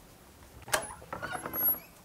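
A sharp mechanical click, then rapid, evenly spaced clicking for about a second, like a ratchet.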